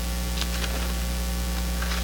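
Steady electrical mains hum with a layer of hiss, with a couple of faint clicks about half a second in.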